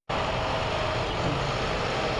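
Steady city street traffic noise, an even rush of engines and tyres with no breaks.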